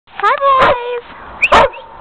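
Dogs barking: two sharp barks about a second apart, with a high whine that rises and then holds its pitch for about half a second around the first bark.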